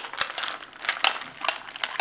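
A metal straw stirring ice in a glass of iced chai: a quick, irregular run of bright clinks as the ice and straw knock against the glass. The loudest clink comes right at the start.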